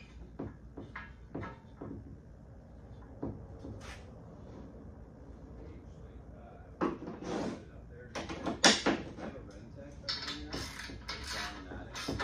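Metal clinks, taps and knocks as a tire-carrier frame and its bolts are handled while the bolts are threaded in by hand. The loudest is a cluster of sharp knocks about eight to nine seconds in.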